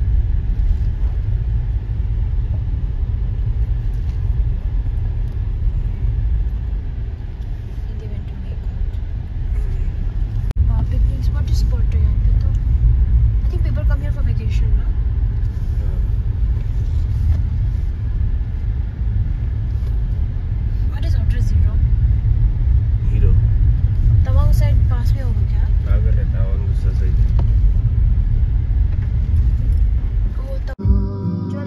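Steady low rumble of a car driving on a rough dirt road, heard from inside the cabin. Indistinct voices talk on and off from about a quarter of the way in.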